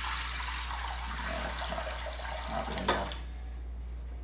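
Kitchen faucet running as water fills a container at the sink, a steady splashing hiss that stops about three seconds in.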